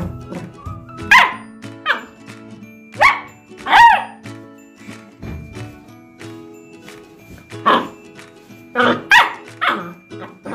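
Beagle puppy barking, about eight short high yaps in bursts: two in the first couple of seconds, two more around three to four seconds in, then a quick run of four near the end. Background music plays underneath.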